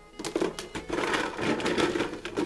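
Hard plastic toy dinosaur figures clattering against each other and the clear plastic bucket as a hand rummages through them, a continuous rattle that starts a fraction of a second in.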